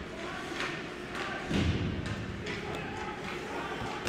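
Ice hockey rink sound during play: faint clacks of sticks and puck and skates on the ice in a large echoing arena, with a brief distant shout about one and a half seconds in.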